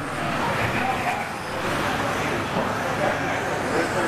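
Electric 2WD stock-class RC off-road buggies racing on a dirt track: a steady mix of motor whine and tyre noise, with faint voices underneath.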